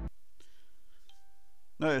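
A faint click, then a short, faint electronic beep about a second in, in a quiet room; speech starts near the end.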